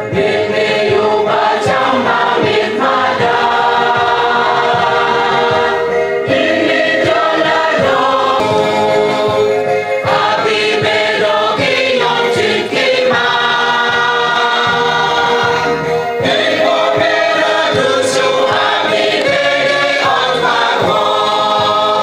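A choir singing gospel-style music, continuous and steady in level.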